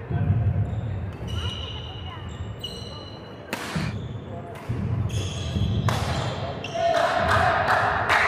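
Badminton rally on a wooden indoor court: sports shoes squeaking on the floor and several sharp racket strikes on the shuttlecock, with the loudest burst near the end.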